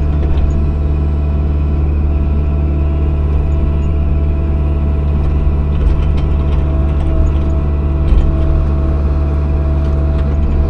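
Cat 305 E2 mini excavator's diesel engine running steadily under load, heard from the operator's seat, with a steady whine over it as the bucket digs and curls in dirt. Faint clicks and scrapes come around six to eight seconds in.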